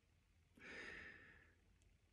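A single faint exhale, like a soft sigh, starting about half a second in and lasting about a second. The rest is near silence.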